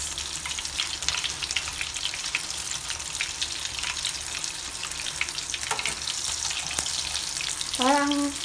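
Breaded fish fillet shallow-frying in hot oil in a nonstick pan: a steady sizzle with dense, fine crackling.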